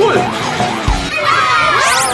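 Children shouting, with a short low thud about a second in. Near the end a sweeping tone rises steeply and falls again, like an added sound effect.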